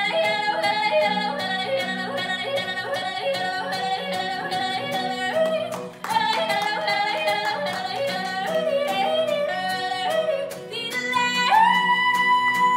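A woman yodeling over her own acoustic guitar strumming: quick runs that leap up and down in pitch, a short break about halfway, then a long held high note near the end.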